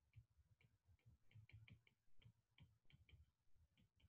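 Near silence broken by faint, irregular light ticks: a stylus tapping against a tablet's glass screen as letters are handwritten.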